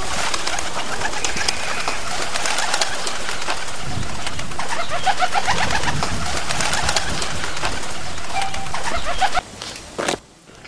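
Many birds calling at once, pigeons cooing among them. The sound starts abruptly and cuts off about half a second before the end.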